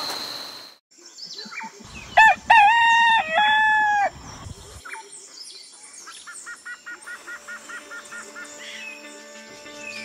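A rooster crowing once, a loud cock-a-doodle-doo lasting about two seconds, starting about two seconds in.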